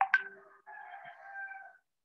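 A held animal-like call: a sharp start, then a steady pitched note lasting about a second that stops shortly before the end.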